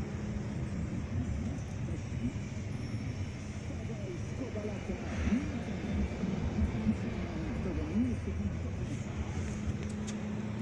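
Indistinct voices talking in the background over a steady low hum, the voices mostly in the second half.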